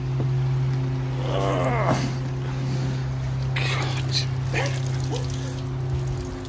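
Steady low electric hum of koi pond filtration equipment running beside the filter, with a little water noise; it eases off right at the end as the camera turns away.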